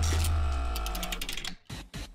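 Segment-transition sound effect: a deep bass tone under a held chord with fast high ticking, fading away about a second and a half in.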